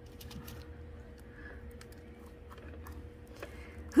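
Faint, scattered small clicks and rustles of gloved hands handling echeveria rosettes and loose leaves on a wooden tray, over a faint steady hum.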